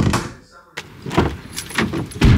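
Handling noise at a camper van's open cab door: a series of short knocks and clunks with a jangle of keys.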